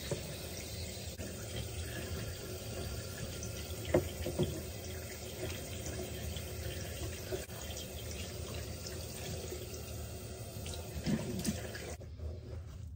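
Water running steadily from a tap into a sink, with a brief knock about four seconds in; the water shuts off near the end.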